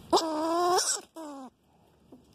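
A squirrel caught in a wire cage trap giving two drawn-out whining calls: a long, loud one just after the start, then a shorter, slightly falling one about a second in.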